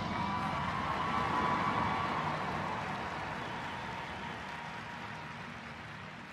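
The marching band's loud hit dies away in a large stadium: a faint held tone and an even hiss of echo and crowd noise, fading steadily.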